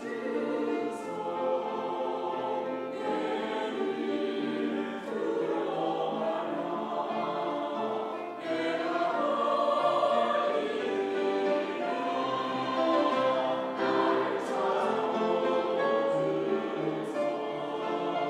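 Mixed church choir of men's and women's voices singing a sacred anthem with grand piano accompaniment, the sound growing somewhat fuller and louder about halfway through.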